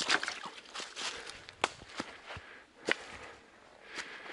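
Footsteps of a hiker crossing stones and dry fallen leaves in a nearly dry stream bed: soft crunching with a few sharp clicks, the clearest about one and a half seconds in and again near three seconds.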